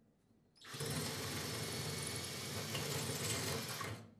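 Cordless drill boring a pilot hole into the grout line of a tiled wall. The drill starts about half a second in, runs steadily for about three seconds and stops just before the end.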